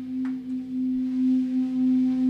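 A single held note from the band's amplified instruments, droning steadily at one pitch with a gentle, slow waver in loudness, left ringing after the song's final crash.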